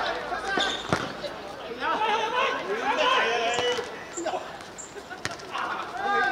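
Football players calling out to each other on the pitch, with two sharp thuds of the ball being kicked, one about a second in and another about five seconds in.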